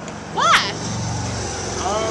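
A steady low engine hum, as of a motor vehicle running, with a short rising vocal cry about half a second in.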